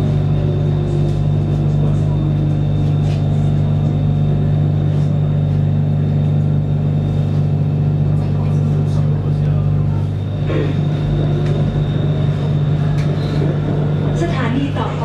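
Steady low hum and rumble of a BTS Skytrain car running along the elevated track, heard from inside the carriage, with a faint tone sliding down in pitch in the first few seconds.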